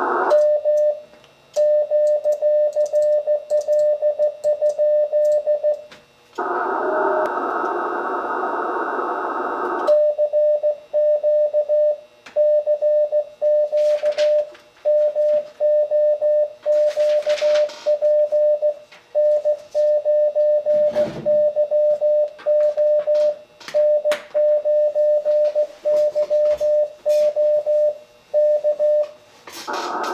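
Icom IC-7300 CW sidetone: a single steady mid-pitched tone keyed in Morse code dots and dashes as the operator transmits. The first short sending asks whether the frequency is in use. It is followed by about four seconds of the receiver's narrow-filtered band hiss while he listens, then a longer run of keyed Morse.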